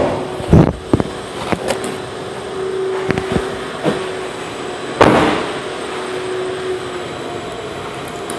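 A few light clicks and knocks from a car's interior being handled, then a louder thud about five seconds in that dies away, as a car door is shut. A steady hum runs under it.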